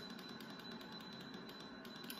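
Small five-tray electric food dehydrator running after being switched on: a faint steady whir with a thin high-pitched whine and fine, rapid, even ticking.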